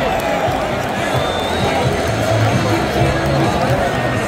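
Music over the stadium's public-address system, with held bass notes, playing over a large crowd's noise.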